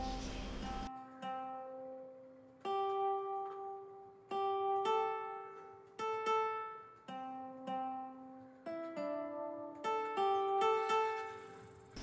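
Background music: a slow melody of single plucked string notes, like a ukulele or guitar, each note ringing and fading. It begins about a second in.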